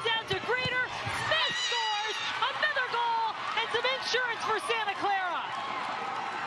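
Excited high-pitched voices shouting and cheering over a goal, several overlapping at once.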